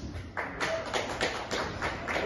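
Scattered hand clapping from a few onlookers: sharp claps at about four or five a second, starting about half a second in.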